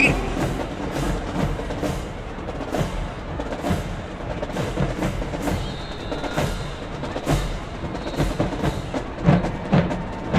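Marching band drumline playing a steady cadence: sharp, evenly spaced strikes about two to three a second over a low drum beat, with no horns or voices on top.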